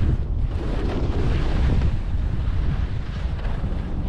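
Wind buffeting the microphone of a skier's action camera during a downhill run, with the skis hissing over the snow.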